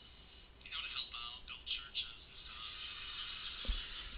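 A stand-up comedy recording playing through the Xperia X1's small loudspeaker: a man's voice, thin and tinny with no bass, talking in the first couple of seconds and then giving way to steady hiss. A low thump of the phone being handled comes near the end.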